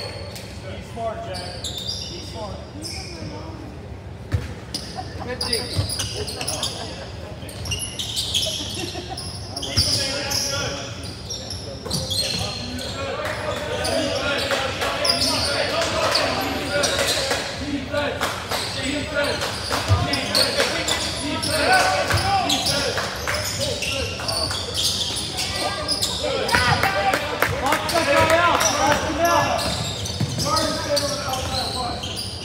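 A basketball bouncing on a hardwood gym floor during live play, with scattered thumps, under the voices of players and spectators in a large, echoing gym; the voices get louder about halfway through.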